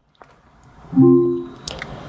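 Short electronic chime from the Mahindra XUV 700's built-in Alexa voice assistant, a steady chord that starts about a second in and fades away after about half a second. It is the wake tone acknowledging the word "Alexa" and signalling that the assistant is listening.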